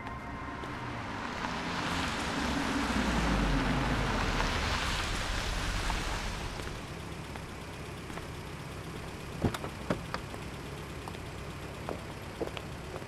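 A Range Rover SUV driving up and stopping, its engine and tyre noise swelling over a few seconds and then dying away. About nine seconds in come several sharp clicks and taps, a car door and footsteps.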